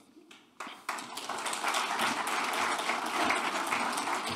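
Audience applauding. Scattered claps come about half a second in and build into steady applause by a second in.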